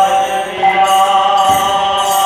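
Devotional chanting: a voice holds one long sung note over jingling hand percussion that strikes about every half second.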